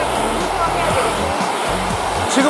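Handheld hair dryer running steadily at a constant level, under background music.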